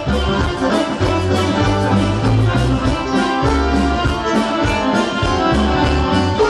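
Live band playing an instrumental passage led by accordion, with violin, keyboard bass and a drum kit keeping a steady beat.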